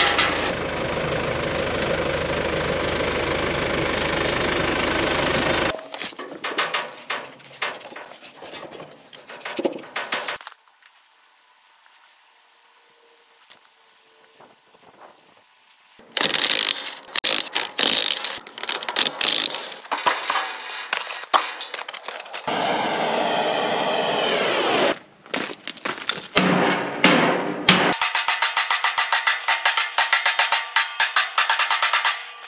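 Cordless impact wrench hammering on trailer wheel lug nuts in rapid bursts, then a steady whir for a couple of seconds. Before it comes a steady running noise that stops about six seconds in, then scattered clicks and knocks and a few quiet seconds.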